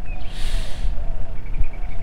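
Wind buffeting the microphone outdoors, a steady low rumble, with a short breath about half a second in.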